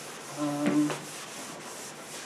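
Chalkboard being wiped: rubbing strokes of an eraser across the slate. A brief low hum sounds about half a second in.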